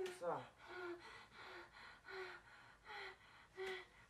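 A woman gasping over and over, short breathy voiced gasps about one every 0.7 s, opening with a falling whimper. The distress is feigned: she is acting out sleep paralysis.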